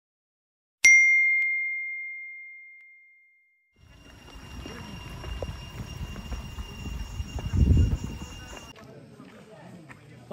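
A single bright bell ding, a subscribe-button notification sound effect, struck once and ringing out as it fades over about two and a half seconds. From about four seconds in, an outdoor recording follows with a low rumble and faint steady high tones.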